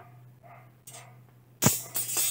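Bent steel rods being laid on the ground: a light click about a second in, then a single sharp metal clank near the end that rings on briefly.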